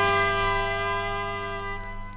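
Orchestra's final sustained chord ringing out and slowly fading at the end of a 1983 pop ballad, its higher notes dropping away shortly before the end.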